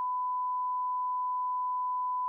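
A steady electronic beep: one unbroken pure tone at constant pitch and loudness, with no other sound under it.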